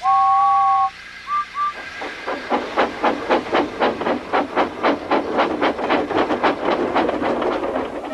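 Steam locomotive whistle sounding one long two-note blast, then two short toots. A steady chuffing follows, about four chuffs a second, rising in level as the engine gets under way.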